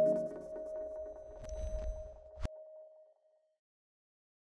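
The tail of an electronic logo jingle: a single tone rings out and fades away over about three seconds, with one sharp click about two and a half seconds in.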